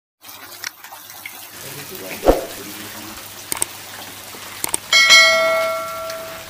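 Catfish splashing and churning in shallow water, with a few sharp clicks and knocks. About five seconds in, a bell dings and rings out, fading slowly: the notification-bell sound effect of a subscribe-button animation.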